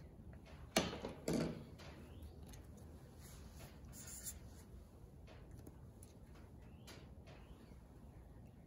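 Two knocks about a second in, then a felt-tip marker squeaking briefly on paper as a number is written, with a few faint clicks afterwards.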